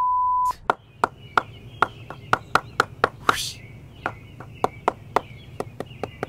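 A steady bleep tone that cuts off about half a second in, then a wooden bat mallet striking the face of a willow cricket bat in quick, regular knocks, about three to four a second: knocking in a new bat. A brief rush of noise a little over three seconds in.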